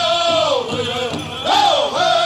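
Pow wow drum group singing high-pitched together around a large powwow drum, with drumbeats underneath. The sung line falls in pitch, then jumps up sharply near the end and falls again.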